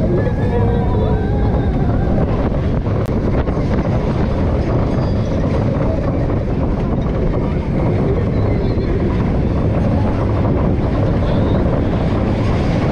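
Wind buffeting the microphone over the steady rumble of a roller coaster train running along its track, with riders shrieking in the first second or two.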